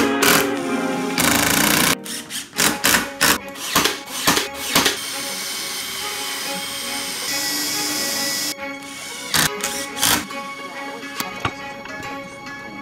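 A DeWalt cordless impact driver drives screws into plywood in short hammering bursts, then a cordless drill bores pilot holes with a steady run around the middle. Background music plays under the tool sounds.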